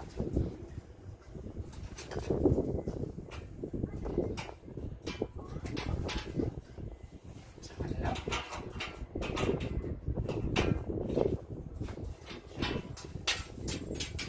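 A spanner clicking and scraping on the nut of a cam lock through a galvanised sheet-steel meter box door, with the thin door knocking and rattling as it is handled.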